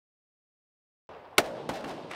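Silence for about the first second, then range noise comes in and a single loud shot from a SAR-21, a 5.56 mm bullpup assault rifle, sounds, followed by a few fainter sharp reports.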